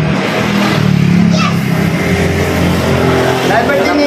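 A motor vehicle's engine running steadily close by, loud throughout, with men's voices over it.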